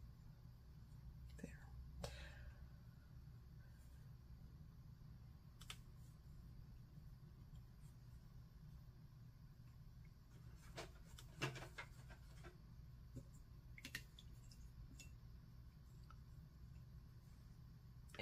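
Near silence over a low steady hum, with a few faint taps and scrapes of a paintbrush mixing green watercolour on a palette.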